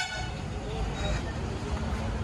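Street traffic: a steady rumble of passing vehicles, with a faint vehicle horn toot.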